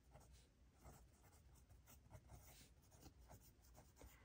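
Very faint scratching of a pen on a workbook page: short, irregular handwriting strokes.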